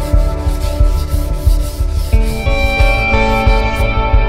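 A sheet of sandpaper rubbed back and forth by hand along the edge of a maple and mahogany cutting board in quick, repeated rasping strokes. Background music with sustained notes plays under it.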